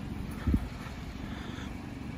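Low rumbling noise from a handheld camera being carried while walking, with one dull low thump about half a second in.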